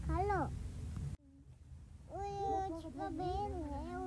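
Young children's voices, drawn-out and sing-song, with a sudden break about a second in.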